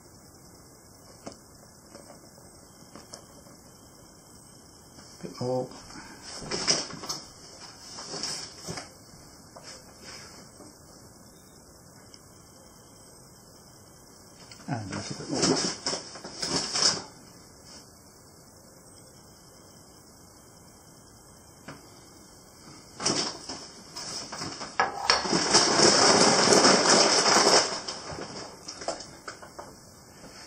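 Intermittent short rustles and scrapes of white flour being scooped and tipped from a mug into a plastic mixing bowl, with a louder rushing noise lasting about three seconds near the end.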